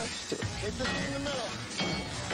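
Background music from the episode playing on the laptop, with faint voices underneath.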